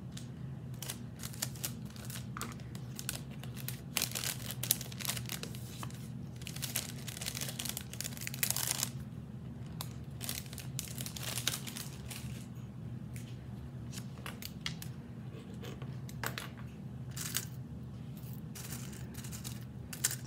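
Crinkling and rustling from handling things off the table, with scattered light clicks and louder stretches of rustling about four and eight seconds in, over a steady low hum.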